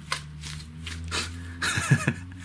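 Gloved hands rubbing and creaking in short, scattered scrapes over a low steady hum, with a louder burst near the end.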